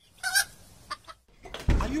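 A chicken's short cluck about a quarter of a second in, followed by a low thump near the end.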